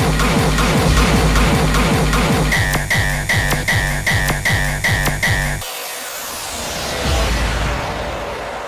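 Electronic dance track with a steady kick drum and bass line. About two and a half seconds in, a short high synth stab starts repeating about three times a second. Past the middle, the kick and bass drop out, leaving a noisy swell, and the bass comes back near the end.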